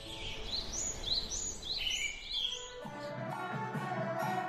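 Bird chirps, a run of about six short rising calls, fill the first two and a half seconds. About three seconds in, Wudang Taoist instrumental music begins: a Chinese traditional ensemble playing pitched notes with light percussion.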